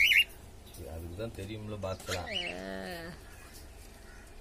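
A cockatiel gives a short, loud, high chirp right at the start.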